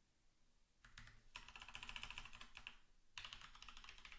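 Faint, rapid typing on a computer keyboard, starting about a second in, with a short pause near the end.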